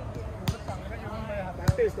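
A volleyball struck twice, about a second apart, the second hit the louder, with players' voices calling.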